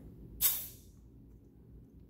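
Compression tester's pressure-release valve venting the air trapped in the gauge and hose: one short, sharp hiss about half a second in that quickly tapers off, resetting the gauge to zero after a cylinder reading.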